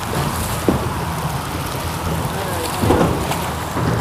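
Wind buffeting the microphone over choppy water that laps against a small boat's hull: a steady rushing noise with a low rumble.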